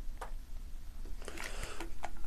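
Beer being poured quietly from a can into a glass, with one faint click early on. A short hissy, splashing patch in the last second as the pour is brought to an end.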